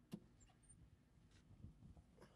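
Near silence inside a car, with a faint click just after the start and a few faint soft knocks and rustles near the end as a man climbs into the driver's seat.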